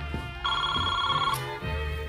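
A telephone ringing: one electronic ring about half a second in, a chord of steady tones lasting almost a second. A low, steady musical beat runs underneath.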